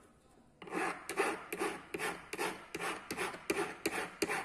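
Hand file rasping back and forth across the metal band of a 16k gold ring held against a wooden bench pin. The rapid, even strokes run about three a second, starting about half a second in.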